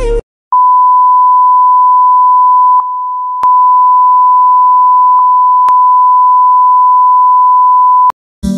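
A loud, steady, single-pitched electronic beep tone that holds one high pitch for about seven and a half seconds. It starts about half a second in, drops in level briefly a little before the middle, and has a few faint clicks where it was spliced.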